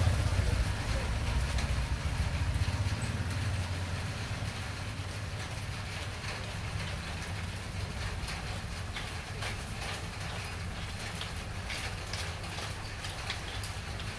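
Low engine rumble of a passing motor vehicle, loudest at the start and fading over the first few seconds into a steady low background hum. Faint irregular ticks sound over it in the second half.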